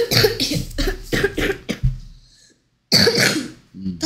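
A person coughing: a quick run of short coughs, then one more cough after a brief pause.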